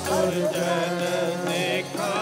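Sikh kirtan: a man's voice singing a devotional hymn with wavering, ornamented pitch over the steady held notes of a harmonium.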